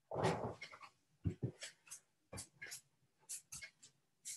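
Quiet, scattered sounds of a person shifting from sitting to hands and knees on an exercise mat: a breathy burst just after the start, then a string of brief soft rustles and light knocks.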